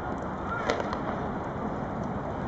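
A baseball smacking into a bare hand once, a single sharp click about two-thirds of a second in, over steady wind noise on the microphone.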